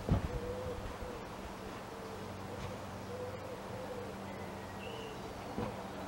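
A bird's low hooting calls, repeated in short phrases throughout, over a faint outdoor background. A short thump comes at the very start.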